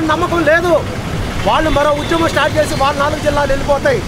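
A man talking, with a steady low rumble of street traffic underneath.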